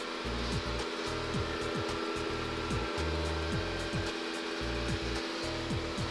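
Dreame DreameBot D10s Pro robot vacuum running with a steady whir from its suction fan and brushes, under background music.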